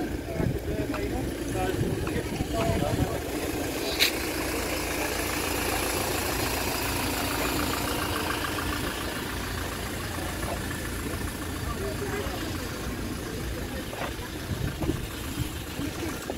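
Busy outdoor market ambience: background voices of passers-by over a steady engine hum that swells through the middle, with a single sharp click about four seconds in.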